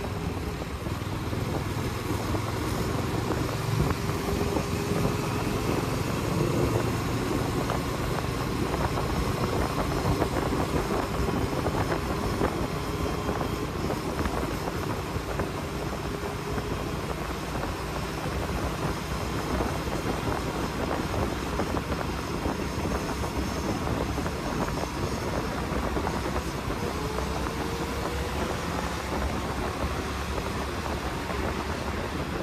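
Motorcycle engine running steadily at cruising speed, its note drifting slightly, under a constant rush of wind over the handlebar-mounted microphone.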